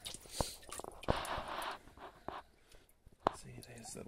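Tank water splashing and dripping as hands lift a short-necked turtle out, with a hissing splash about a second in and a few sharp knocks, the loudest a little after three seconds.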